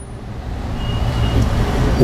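A passing road vehicle: a low rumble that grows steadily louder.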